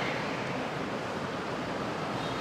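Steady street ambience: an even hiss of traffic noise with no distinct events.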